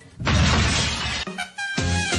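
A crash sound effect: a loud burst of smashing noise lasting about a second. Lively Latin dance music with a steady beat starts near the end.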